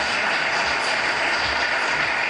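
Audience applauding: a steady wash of many hands clapping.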